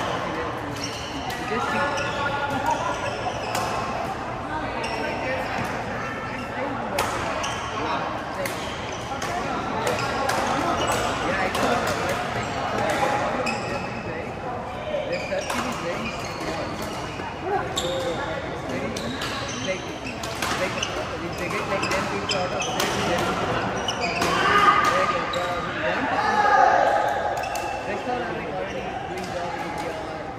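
Badminton rackets striking a shuttlecock in rallies: many sharp, short hits at irregular intervals, echoing in a large hall, over steady chatter of voices.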